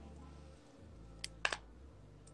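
Quiet room tone with a few short, sharp clicks a little past the middle, like handling noise.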